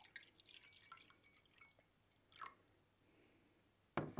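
Water poured from a plastic measuring jug into a glass tumbler, heard faintly as trickling and dripping, with one slightly louder drip about two and a half seconds in.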